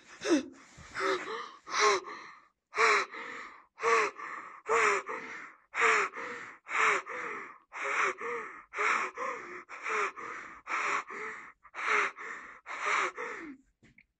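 A person breathing heavily with a voiced catch on each breath, gasping about once a second in a steady rhythm.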